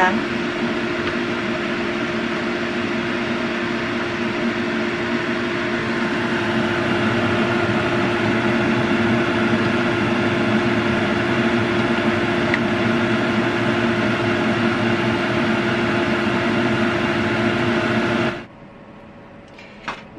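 Steady whirring hum and hiss of a kitchen fan running, with a low drone held throughout, cutting off suddenly a second or two before the end.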